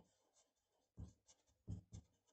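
Marker pen writing on paper, heard faintly as a few short strokes about a second in and near the end.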